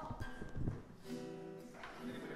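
Acoustic guitar: a chord strummed about a second in and left ringing, with another strum near the end, after a few low knocks in the first half-second.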